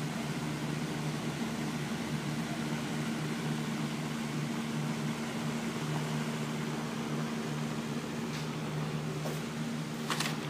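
Steady low hum of a ventilation fan, unchanging throughout, with a couple of faint clicks near the end.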